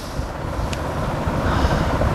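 Steady low rumbling background noise through a pause in speech, with one faint click about three-quarters of a second in.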